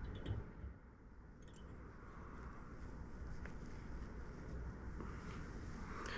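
Quiet room with a steady low hum and a few faint light clicks from hands working a fly-tying bobbin and thread at the vise.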